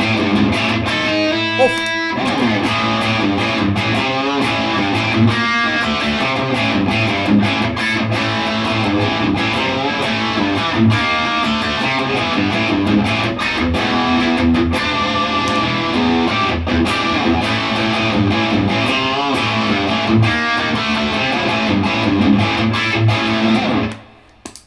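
Electric guitar played through a Beyond Tube Pre Amp pedal into a Blackstar Studio 10 tube amp set to maximum gain, a heavily distorted tone with the pedal's EQ flat and its gain at its previous setting. The playing goes on without a break and stops at the very end.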